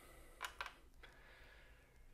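Near silence, with two faint light taps close together about half a second in, and a fainter one about a second in: a Seiko Mini Turtle dive watch on its rubber strap settling onto the steel platform of a digital kitchen scale.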